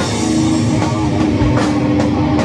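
Heavy doom/stoner rock instrumental: an electric guitar riff held over a drum kit, with drum and cymbal strokes under a second apart.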